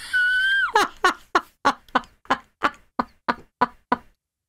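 A woman laughing: a high drawn-out note that drops away, then a quick run of about a dozen short 'ha' pulses, roughly four a second, cut off suddenly near the end.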